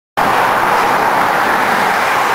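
Steady rush of highway traffic, an even continuous noise with no separate passes standing out.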